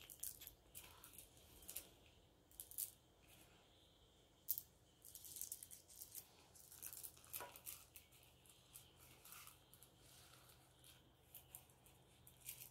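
Faint, scattered clicks and light rattles of small crystal chips being handled and set down on a cloth-covered board, with a sharper click about four and a half seconds in.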